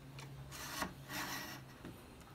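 Telescopic rod antenna of a Sony CFS-715S boombox being pulled out: two short metal scraping slides over a low steady hum.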